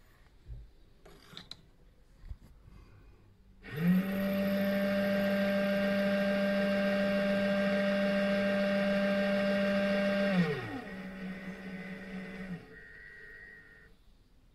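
RCBS ChargeMaster 1500 powder dispenser's motor spinning its drop tube to throw a powder charge. A steady hum starts about four seconds in; about ten seconds in the pitch slides down as the motor slows to trickle the last grains, and it stops near the end.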